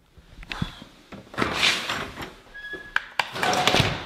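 Door being opened and walked through, with several knocks and clicks and a brief squeak.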